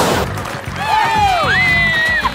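Several people shouting and whooping in excitement, with one high held whoop near the end, over background music with a steady beat. A single sharp crack comes at the very start.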